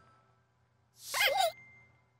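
Cartoon sound effect of a contented sigh about a second in: a short breathy swell with a wavering, voice-like pitch. A faint thin tone lingers after it.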